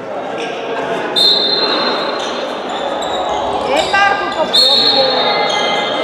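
Indoor handball play on a wooden sports-hall court: a ball bouncing, young players' voices calling out, and two high, steady squeals about a second long, one just after a second in and one about four and a half seconds in, all echoing in the large hall.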